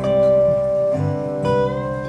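Live acoustic folk music between sung lines: strummed acoustic guitars under a slide guitar holding long melody notes. The melody note changes about a second in.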